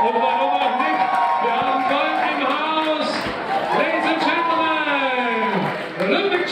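A crowd singing and cheering together. Many voices hold long, drawn-out notes that glide up and down and overlap.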